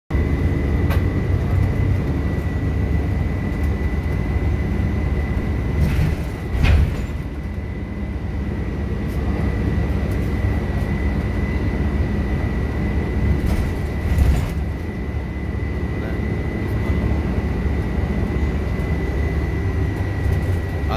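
City bus engine and road rumble heard from inside the passenger cabin while the bus is moving, with a steady high-pitched whine over it. Two brief bumps stand out, about a third and two-thirds of the way through.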